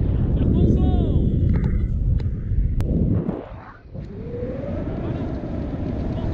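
Wind rushing over an action camera's microphone in paraglider flight. It drops away briefly past the middle, and faint gliding tones sound over it.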